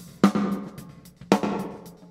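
Recorded snare drum playing back with two hits about a second apart, each followed by a long room reverb tail. The reverb is Oxford Reverb's Reflective Room preset, with its send pushed up too far so the effect is exaggerated.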